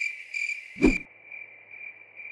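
Cricket chirping sound effect: a steady, high, pulsing trill, the stock comic cue for an awkward silence. A single short low thump cuts in just under a second in.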